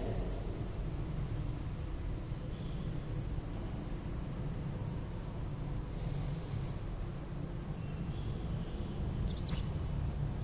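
A steady high-pitched insect trill, unbroken, over a low steady background hum.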